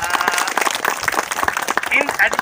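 A small group of people applauding, many hands clapping at once, with a voice talking over it early on.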